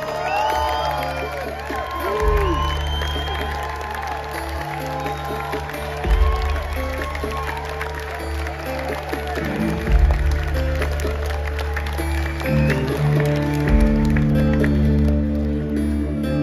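Live band playing a slow song intro, sustained low bass notes under a deep thump about every four seconds, with fuller accordion chords coming in near the end. Crowd cheering and clapping over it, with whoops in the first few seconds.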